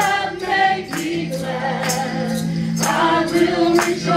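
Women's voices singing a worship chorus together in harmony through microphones, over a regular percussion beat of about two hits a second.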